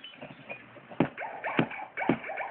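Hard plastic hippo roll-around toy knocking and clattering as it is batted about, with sharp knocks about a second in and again half a second later amid lighter ticks.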